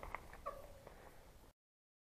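Mountain bike rolling over gravel, with a low rumble, small rattles and clicks, and a short squeak about half a second in. The sound cuts off abruptly after about a second and a half.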